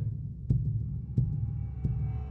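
Heartbeat sound effect in a film soundtrack: three low single thuds, evenly spaced about two-thirds of a second apart, over a steady low hum. Faint sustained music tones begin to come in near the end.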